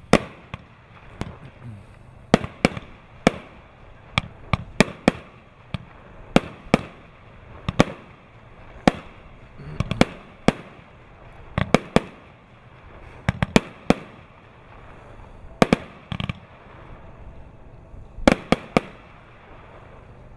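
A 25-shot, 30 mm consumer firework battery (cake) firing its red peony shells: a string of sharp bangs, roughly one a second at irregular spacing, with a quick cluster of bangs near the end as the finale goes off.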